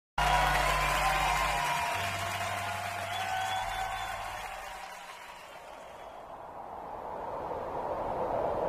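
A live band's held notes ringing out and fading over the first few seconds, with a bass note changing about two seconds in. Audience applause continues underneath and swells again toward the end.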